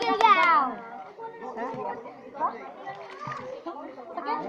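A loud shout from a person, falling in pitch and dying away in under a second, followed by quieter overlapping voices and calls from a group of people.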